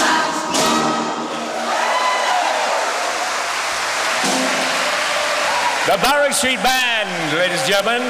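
A brass band and choir end on a final held chord that cuts off about a second in, followed by steady audience applause in a large hall. A man starts speaking over the applause about six seconds in.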